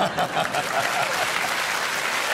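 Studio audience applauding after a joke, with some laughter mixed in during the first second.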